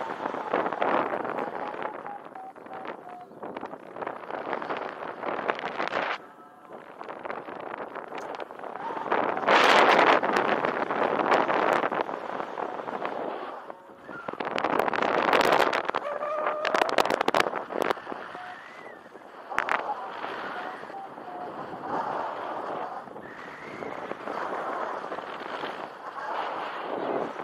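Airflow buffeting the microphone of a paraglider's harness-mounted camera in flight, a gusty rushing that swells and drops every few seconds.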